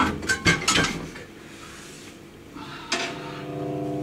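A few sharp metallic clicks and clinks in the first second from a drummer handling sticks and kit hardware, then a quieter stretch. About three seconds in there is a knock, after which a faint held tone from the electric guitar through its amplifier comes in just before the band starts playing.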